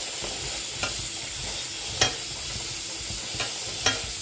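Tap water running steadily onto chickpeas in a stainless steel colander as a hand stirs them through, with a few short sharp clinks, the loudest about halfway through.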